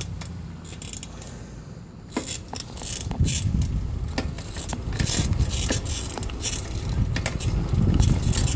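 A bicycle being ridden on a paved road: irregular mechanical clicks and rattles from the bike's drivetrain and frame over a low rumble of wind and tyres, which grows louder about two seconds in.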